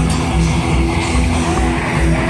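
Heavy metal band playing loud, with distorted electric guitars over a steady drum beat, heard through the PA from the audience.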